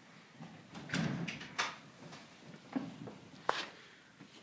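A few separate knocks and clunks spread across four seconds, the sharpest about one and a half and three and a half seconds in.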